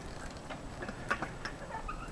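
A wooden swing's hanging hardware creaking as it sways: a few sharp clicks about a second apart and a short squeak near the end.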